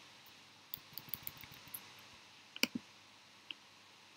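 Computer keyboard and mouse clicks while code is edited: a quick run of light key taps from about a second in, then a sharper double click a little past halfway and a single click near the end.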